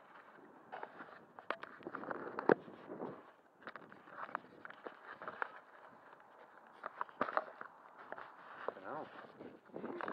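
Footsteps through grass with irregular knocks and rubbing as the carried model aircraft bumps and brushes against clothing.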